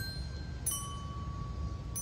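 Wind chimes ringing in a breeze: two strikes, one at the start and one about two-thirds of a second in, each leaving a few clear tones ringing on. Under them is a low rumble of wind on the microphone.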